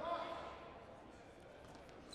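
Faint voices in a quiet, echoing gymnasium: a brief voice right at the start, then low murmur with no ball bounces heard.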